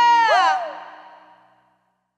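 A woman's voice holds the song's final high sung note, then lets it slide down about half a second in while a second voice glides down beneath it. The backing band stops with it, and the last of the sound dies away over about a second.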